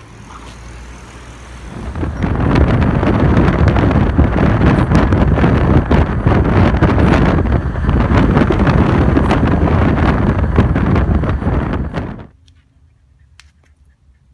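Loud wind rushing over the microphone and road noise from a car driving at motorway speed with a window open. It starts about two seconds in and cuts off suddenly near the end. A short rising squeak comes right at the start.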